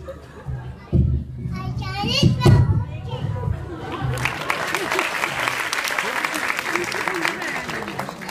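Young children's voices over music in a hall, with a few loud thumps in the first half. The music stops about halfway and a dense spell of audience clapping and children's chatter takes over.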